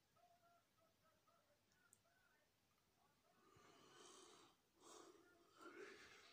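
Near silence, with a few faint breaths close to the microphone in the second half.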